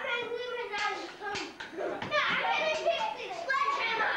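Children's voices: excited, overlapping child chatter and play.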